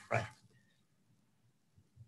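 A man's voice says one short word at the start, then near silence (room tone) with two faint low knocks near the end.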